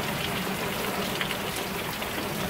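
Steady rain falling on stone paving and a plastic rain barrel, an even patter of drops.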